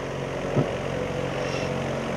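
Large fan used as a wind machine, running steadily with a continuous low droning hum and rush of air.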